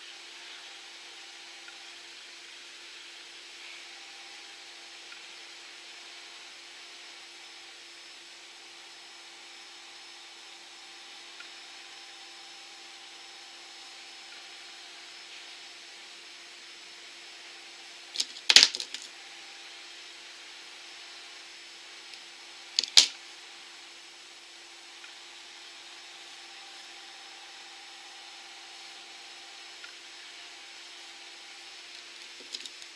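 Small scissors snipping nail striping tape: two sharp snips about four and a half seconds apart, past the middle, over a faint steady hum.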